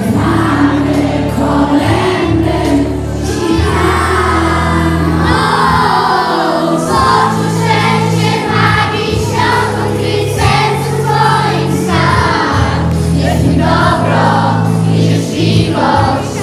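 A children's choir singing a Christmas song in unison over instrumental accompaniment.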